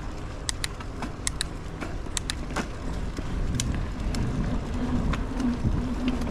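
Mountain bike rolling over a dirt forest trail: a steady low rumble of tyres and bike rattle, with scattered sharp clicks and ticks. A low steady hum joins about four seconds in as the ride gets slightly louder.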